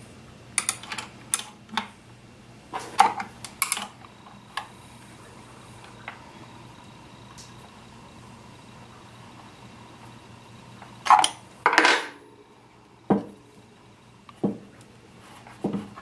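Light metallic clinks and ticks of a small 5/16 wrench working a Chicago-style screw on a Hi-Point 995 carbine's receiver shroud. A cluster of short clicks comes in the first few seconds, then a quiet spell, then two louder clinks about eleven and twelve seconds in, followed by a few lighter ticks.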